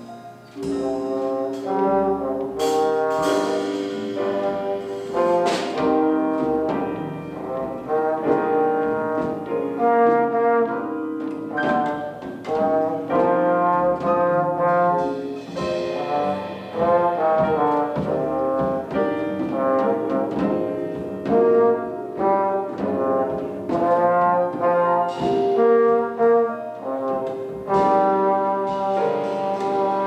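Small jazz combo playing: saxophones and trombone sound the melody together over piano, drums and upright bass.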